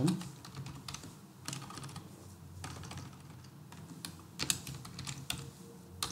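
Typing on a computer keyboard: several short bursts of keystrokes with brief gaps between them.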